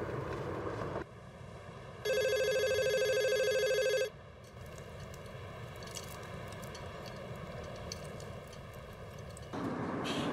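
A telephone ringing: one warbling electronic ring lasting about two seconds, starting about two seconds in.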